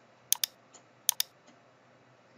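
Sharp clicks from a computer mouse or keyboard: two quick pairs, about a third of a second in and just past one second, over faint room hiss.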